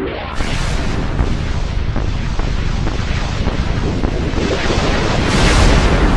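Heavily distorted logo jingle from an audio-effects edit: a dense, harsh wash of noise with the music buried in it. It runs loud and steady and grows a little louder near the end.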